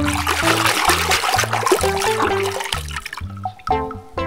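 A hand swishing and splashing through a tub of soapy water, stopping about three seconds in, over background music with a plucked bass line.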